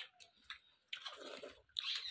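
A person chewing food with some crunching, in short bursts about a second in and again near the end.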